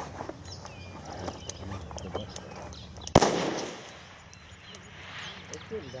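A single rifle shot about three seconds in, sharp and loud, followed by an echo dying away over about a second.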